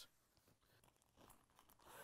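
Near silence, with a few faint rustles of backpack fabric being handled, about a second in and again near the end.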